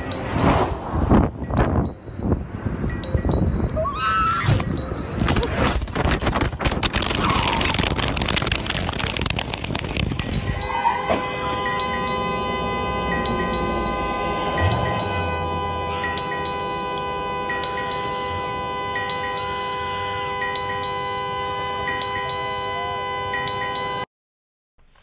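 Freeway traffic heard through a dropped phone's microphone lying on the road: a dense rush of passing vehicles with knocks and impacts and a short squeal about four seconds in. From about eleven seconds a mobile phone ringtone chimes steadily, a caller ringing the phone on the roadway.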